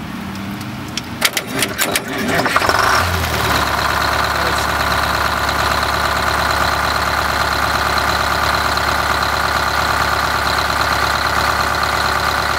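A Detroit Diesel engine is jump-started by shorting a GM starter's solenoid trigger wire to the positive battery post with a screwdriver. A few sharp clicks sound as the terminals are bridged, the starter cranks, and about three seconds in the engine catches and settles into a steady idle.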